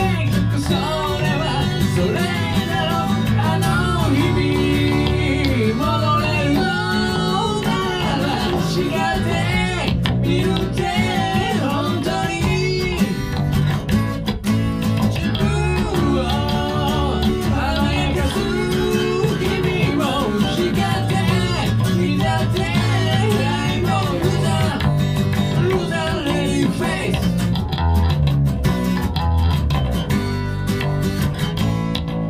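Live acoustic band: strummed steel-string acoustic guitar with electric bass under a male lead vocal sung into a handheld microphone. The singing drops out near the end while the guitar and bass play on.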